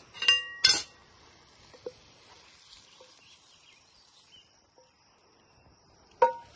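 Cookware clinks as gnocchi is served from a frying pan onto a plate: two sharp ringing clinks of the spoon knocking the pan early on, followed by a few faint light taps.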